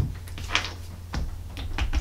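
A few light clicks and knocks from handling a rotary airbrush holder stand with airbrushes on it.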